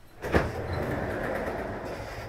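Office chair casters rolling across a hard floor: a thump about a third of a second in, then a steady rumble.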